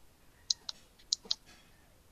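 Four short, light clicks in two quick pairs, about half a second apart.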